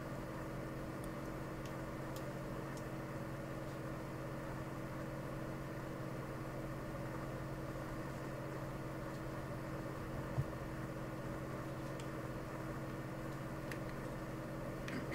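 A steady low machine hum, with a few faint clicks and a light knock about ten seconds in.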